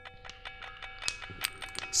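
Struck stones ringing as a lithophone: a quick run of light strikes, each leaving clear, bell-like ringing tones at several pitches that overlap and hang on.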